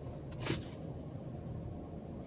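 A brief swish of trading cards being handled, about half a second in, over a low steady room hum.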